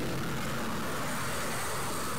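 Steady background hiss, even and unchanging, with a faint high whine running through it.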